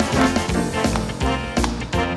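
Live worship band music: electronic keyboard over bass and a steady drum beat, with held chord notes in a brass-like sound.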